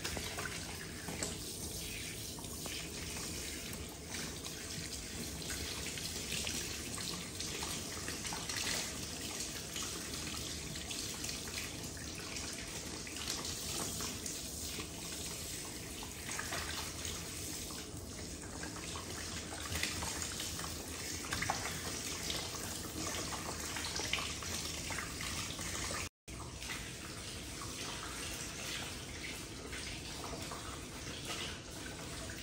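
Water running steadily into a sink or basin, with irregular splashing. The sound cuts out for a split second a little over 26 seconds in.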